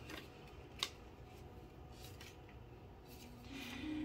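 Faint room tone with a few light ticks and one sharp click a little under a second in. A low hummed voice sound starts near the end.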